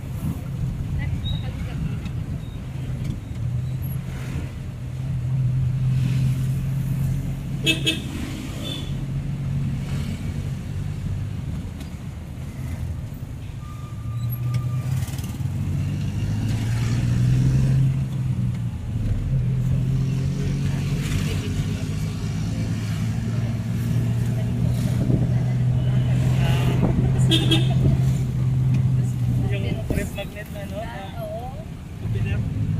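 Vehicle engine running steadily as heard from inside the cabin while driving, its pitch shifting with speed partway through. Short horn toots sound about eight seconds in and again near the end.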